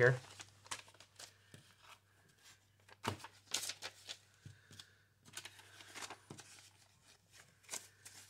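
Paper banknotes being handled and counted by hand: faint scattered rustles and flicks of the bills, with a few louder ones about three seconds in and near the end, over a steady low hum.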